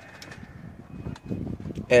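A dove cooing faintly in the background during a quiet outdoor pause, then a man's voice starting right at the end.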